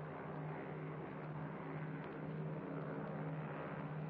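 Four-engine propeller airliner's piston engines droning steadily in flight, with a low hum that pulses.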